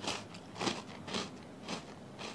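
A person chewing a mouthful of crunchy Korean shrimp-flavoured crackers (Saeukkang): about four crunches, roughly half a second apart.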